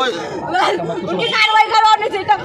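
Speech only: several people talking over one another in an agitated group conversation.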